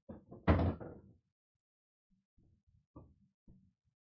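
Pool balls knocking on a 7-foot Valley bar table just after a shot: a loud, deep knock about half a second in, then a few lighter knocks around three seconds.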